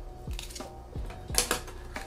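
Small accessories and plastic packaging being handled on a desk: a few light clicks and taps, with a brief crinkle of a plastic bag about one and a half seconds in.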